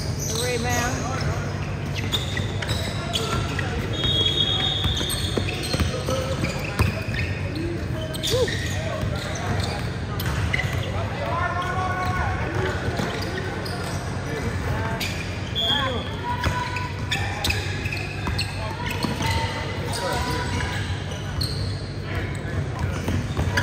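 A basketball game on a hardwood gym court: a ball bouncing and short sharp strikes through the play, with players' and onlookers' voices calling out over a steady low hum.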